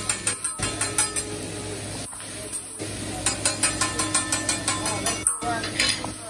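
Metal spatula clicking and tapping on a hot teppanyaki griddle in quick runs of sharp metallic clicks, several a second, with short breaks between runs.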